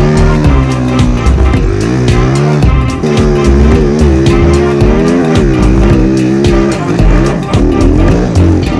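Music with a steady beat mixed with the single-cylinder four-stroke engine of a 2007 Yamaha YZ450F snowbike, revving up and down as it rides through powder.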